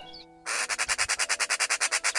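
Eurasian magpie chattering: a rapid, dry rattle of about ten harsh notes a second, starting about half a second in and lasting under two seconds, over soft background music.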